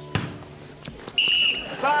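A basketball hits the gym floor with a sharp thud, followed by a few faint knocks. About a second in, a referee's whistle gives one short, shrill blast, calling a foul.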